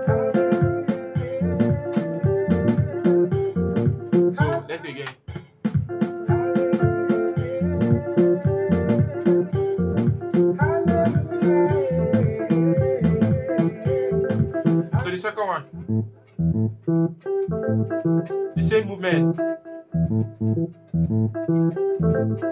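Electronic keyboard playing a makossa groove with both hands: a busy rhythmic bass line under held chords. The playing breaks off briefly about five seconds in and again around fifteen seconds, then carries on.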